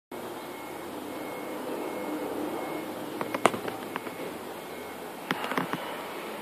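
Steady outdoor urban background noise, broken by a few sharp clicks and knocks: the loudest about three and a half seconds in, and a quick cluster of them near the end.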